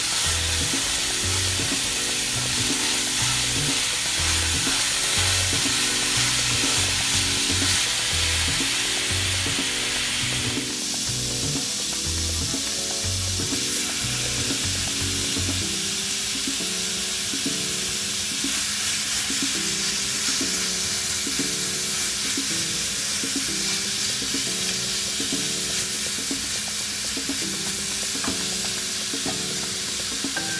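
Ground beef sizzling as it browns in a hot cast-iron skillet, stirred and broken up with a silicone spatula in the first part. Background music with a bass line plays under the sizzle.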